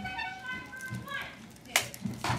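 Children's voices in the background, high-pitched and drawn out, with a brief sharp noise near the end.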